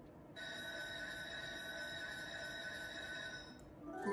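Merkur Lucky Pharao slot machine sounding a steady electronic tone, several pitches held together without change for about three seconds, as a winning spin comes to rest; it starts a moment in and cuts off near the end.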